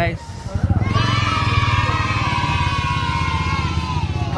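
A motorcycle engine running close by, growing loud about a second in, with a high whine above it that slowly falls in pitch.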